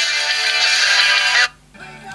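Music playing from a smartphone's built-in speaker, cutting off suddenly about one and a half seconds in as the phone hands its audio over to the newly connected Bluetooth receiver.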